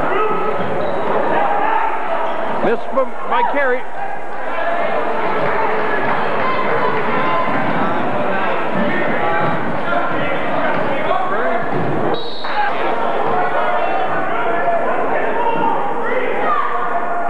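Crowd chatter filling a gym during a basketball game, with a basketball bouncing on the court floor and a few short squeaks about three seconds in.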